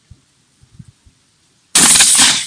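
A single loud shotgun shot near the end, fired with a slug, its sharp report dying away over about half a second.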